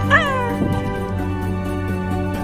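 A tabby cat gives one short meow right at the start, rising then falling in pitch, picked up close by a small clip-on microphone held at its chin. Background music plays throughout.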